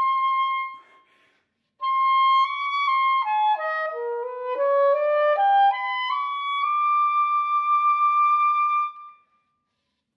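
Solo classical soprano saxophone playing a slow, unaccompanied melody. A held high note fades out, and after about a second's pause a new phrase steps down note by note, then climbs back to a long held high note that dies away about a second before the end.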